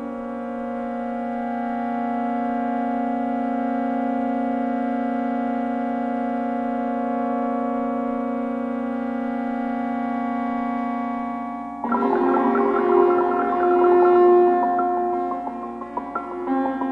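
Electronic synthesizer music: a steady held drone chord for about twelve seconds, then a sudden change to a louder passage of quick, short notes over a sustained tone.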